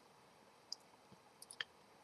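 Near silence with a few faint, short clicks, one a little past a third of the way in and a small cluster about three quarters of the way through.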